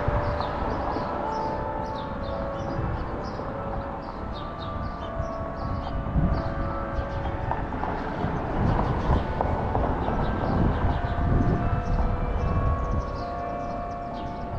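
Tower bells of a carillon playing a tune: single notes at different pitches struck one after another, each ringing on after the strike, over a low rumble underneath.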